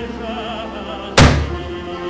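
Operatic-style singing over background music, with wavering held notes. About a second in comes one loud thunk: the plastic lid of a wheelie bin banging as it is flung open.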